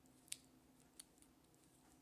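Near silence with two faint clicks of a plastic snake cube puzzle's segments being twisted, about a third of a second in and again at about one second.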